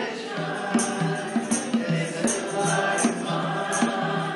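Congregation singing a hymn together, accompanied by a strummed ukulele with a steady strumming rhythm of about three strokes a second.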